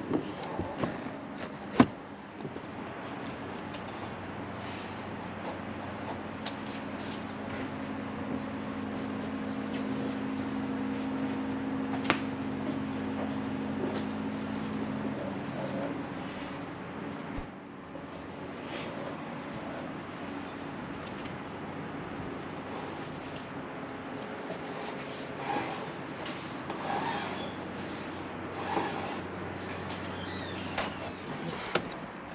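Scattered clicks, knocks and rubbing from hand tools and cut-out wire being handled against a windshield, the sharpest click about two seconds in, over a steady low hum that eases off about halfway through.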